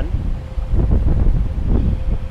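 Wind buffeting the microphone: a heavy low rumble that swells about half a second in.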